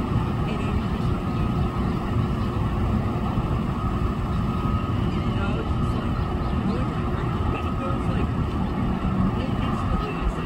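An SUV driving slowly through deep floodwater, its engine and the water it pushes heard as a steady rumble.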